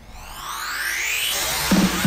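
Electronic riser used as a radio transition effect: a whoosh that sweeps upward in pitch and swells in loudness, ending on a deep bass hit.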